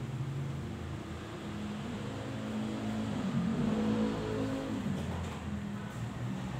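An engine running, its pitch rising and falling as it revs, loudest in the middle, over a steady background hiss.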